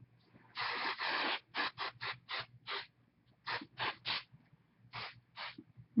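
Hairspray being sprayed onto styled hair: one longer hiss of about a second, then about ten short bursts in quick groups.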